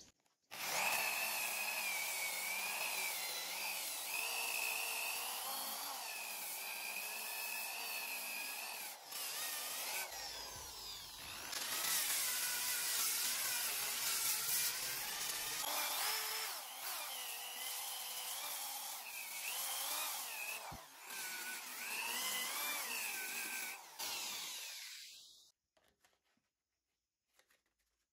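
Electric drill spinning a sanding disc on a backing pad against the cut ends of pine boards: a wavering motor whine over the rasp of abrasive on wood. It eases off briefly a few times and winds down just before the end.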